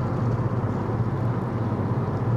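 Steady car cabin noise while driving: a low hum of engine and tyres under an even road hiss.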